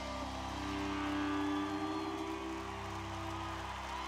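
Live band music: an instrumental passage of held, sustained chords and bass notes, with no singing.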